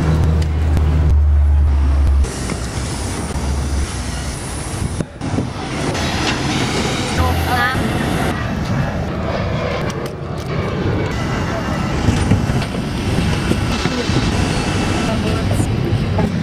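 Steady vehicle noise with people talking over it, and a strong low hum in the first two seconds that returns briefly twice.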